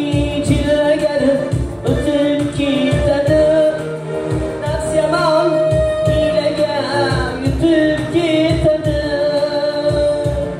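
A live Uzbek song: a young man's voice sings the melody into a microphone with a wavering, ornamented line. A clarinet and a Korg keyboard play along over a steady keyboard drum beat.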